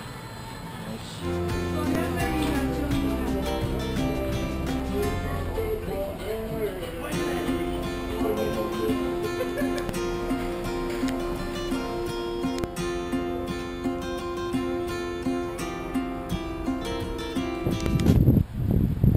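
Background music, coming in about a second in and playing steadily.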